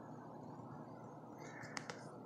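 Quiet room background with a low, steady hum, and a few faint clicks near the end.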